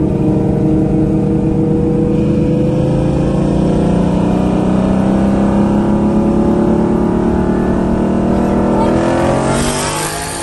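Twin-turbo Lamborghini Huracan's V10 at full throttle, heard from inside the cabin during a roll race, pulling hard in one gear with its pitch climbing slowly for about nine seconds. Near the end the pitch jumps and the engine eases off.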